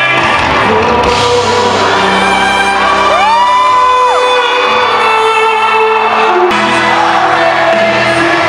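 A live band playing amplified music in a large hall while the crowd screams and cheers. One high scream rises, holds for about a second and falls in the middle. The sound changes abruptly a few times as short clips are cut together.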